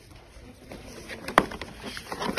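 Cardboard box and paperback books being handled as they are taken out of the box, with light taps and one sharp knock about one and a half seconds in.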